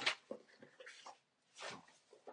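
Soft handling noises of a book or papers being picked up: scattered small knocks and rustles, with a short breathy hiss about one and a half seconds in.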